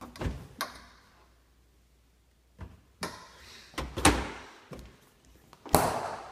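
Doors of a stainless French-door refrigerator being opened and swung shut: two light knocks at the start, then several thumps over the second half, the loudest near the end.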